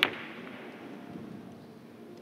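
Carom billiard balls colliding in a three-cushion shot: one sharp clack right at the start, ringing out briefly.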